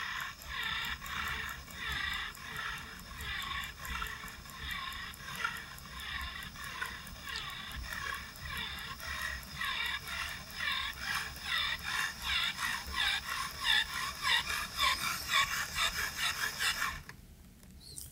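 Beamex ePG electric pressure pump running on its coarse setting, pumping in a steady train of strokes, about two a second and quickening to about three a second. It is building pressure toward the 2.5 bar (50%) calibration point, and it stops about a second before the end.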